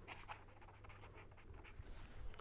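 Faint scratching of a pen writing a word on paper, in a few short clusters of strokes.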